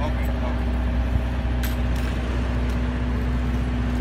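Parked ice cream truck running at idle, a steady low hum with a constant drone.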